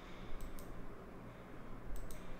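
A few short, sharp computer mouse clicks against quiet room tone: two about half a second in and two more near the end, opening the slide-show pen menu.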